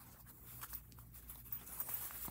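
Faint handling sounds of a fabric pen pouch as a fountain pen is slipped into one of its loops: soft rustling with a few light clicks, over a low steady hum.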